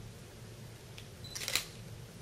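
A camera shutter fires once about one and a half seconds in, just after a short high beep, with a fainter click about a second in.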